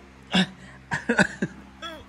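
A man laughing in short, breathy bursts: one chuckle, then a quick cluster of several, then one more near the end.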